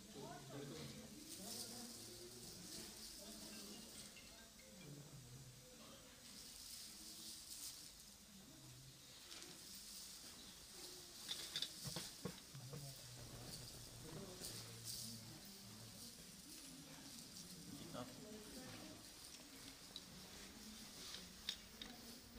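Faint, indistinct voices murmuring in a quiet room, with light rustling and a few small clicks, clustered about halfway through.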